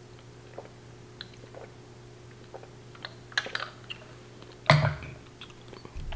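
Faint scattered clicks and light taps over a low steady hum, then one short, louder thump a little before the end.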